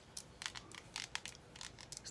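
Faint crackling rustle of a comb or brush drawn through a section of hair, with scattered small irregular ticks, smoothing it before it goes in the curling iron.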